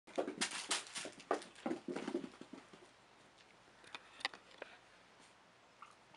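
Hooves of young hoofed animals leaping and scampering on a carpeted floor and blanket. A quick flurry of thuds and taps fills the first two and a half seconds, then a few lighter scattered taps follow.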